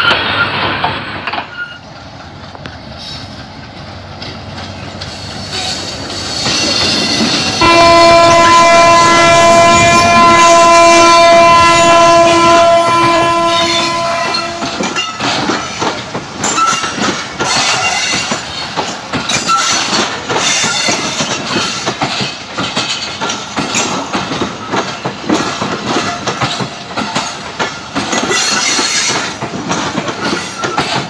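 Train horn sounding one long, loud blast of about seven seconds, then passenger coaches rolling past with a steady clickety-clack of wheels over the rail joints. Before the horn, the rumble of an earlier passing train fades away in the first two seconds.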